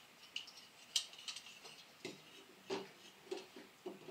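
Faint, irregular small metallic clicks and scrapes from handling a metal oil-lamp burner: a new flat wick is being pushed up through the bottom of the burner and the wick-wheel worked so its toothed grabbers catch it.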